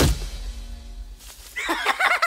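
A sharp thud at the start as a cartoon character slams flat onto a wooden floor. About a second and a half in, a high-pitched, rapidly pulsing cartoon laugh begins.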